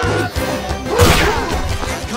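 Fight sound effects over action music: a sharp whip-like swish and strike about a second in, followed by a falling swoosh, as a staff is swung in combat.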